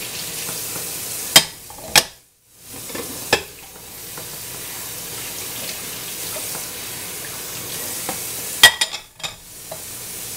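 Tap water running steadily into a kitchen sink while dishes are washed, with sharp clinks of dishes and glassware three times in the first few seconds and a quick cluster of clinks near the end. The sound briefly cuts out just after the second clink.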